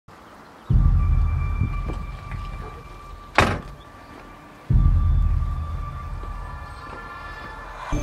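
Horror-trailer sound design: two deep boom hits about four seconds apart, each dying away over a couple of seconds, over a faint steady high tone, with a short sharp swish between them.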